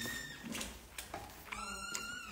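A high, thin squeaky whistle made at the mouth with a fist pressed against the lips: a short one at the start, then a longer, slightly lower one about one and a half seconds in that falls in pitch as it fades.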